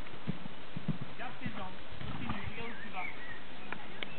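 A horse's hoofbeats on sand arena footing: a run of dull, uneven thuds as it moves at speed, with people talking in the background.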